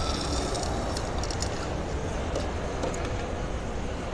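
Steady low background rumble, with a few brief, faint clicks in the first three seconds.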